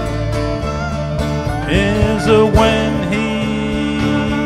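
Live country-blues band playing an instrumental passage: lap steel guitar notes sliding up and down in pitch over a steady upright bass line.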